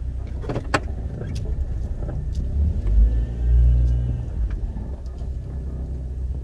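Chevrolet Trailblazer heard from inside its cabin while moving slowly: a steady low engine and road rumble that swells for about a second and a half in the middle. There is a single sharp click near the start.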